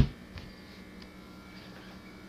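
A low, steady hum with a few faint ticks.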